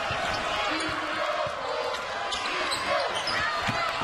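Game sound from a televised college basketball game in an arena: a steady crowd din, with the ball bouncing on the hardwood and short squeaks scattered through.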